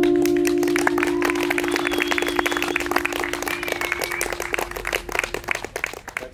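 A final strummed chord on an acoustic guitar rings out and slowly fades while the audience claps, the clapping starting about half a second in and thinning out near the end.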